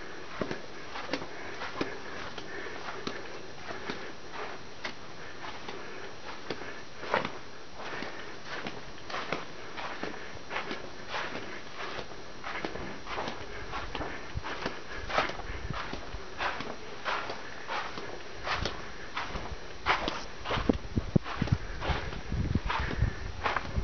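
Footsteps crunching on the gritty sand and rock of a slot-canyon floor, an uneven string of scuffing steps about one or two a second. A low rumble builds near the end, when the steps also get louder.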